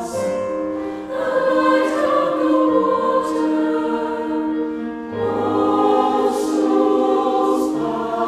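Mixed choir of men's and women's voices singing slow, sustained phrases in several parts. The voices briefly dip and re-enter about a second in and again near the middle, at the start of each new phrase.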